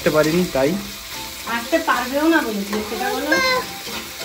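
Food sizzling in a frying pan while it is stirred with a spatula.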